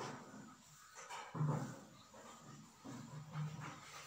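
An animal's voice, most like a dog's: several short, low vocal sounds in a row, the loudest about one and a half seconds in.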